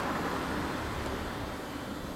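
A steady, even rush of background noise with no clear engine note, fading slightly.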